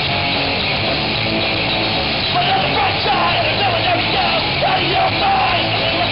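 Punk rock band playing live: electric guitars, bass and drums, with a shouted lead vocal coming in a little over two seconds in.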